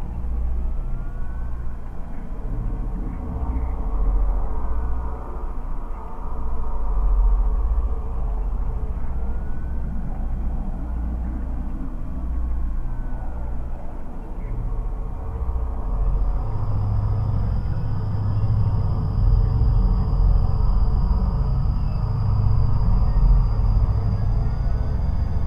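Dark experimental electronic track: a dense, rumbling bass drone with pulsing low throbs and faint gliding tones above. About two thirds of the way in, a heavier bass hum swells and a thin, steady high tone enters.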